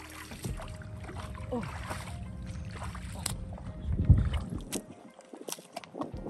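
Bare feet squelching and sloshing through soft pluff mud and shallow water, with a louder thump about four seconds in. A low steady rumble underneath drops away near the end.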